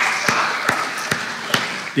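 Light hand-clapping welcoming a visitor: about five sharp claps, roughly two a second, over faint scattered clapping.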